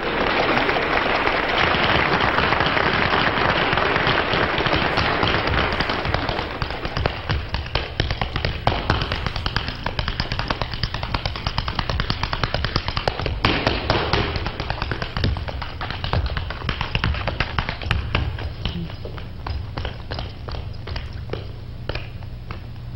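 Tap shoes on a stage floor: a tap-dance routine of fast, sharp taps, heard in an old black-and-white television recording with a dull, muffled top end. The first several seconds are a dense, continuous clatter, which then breaks into separate quick taps.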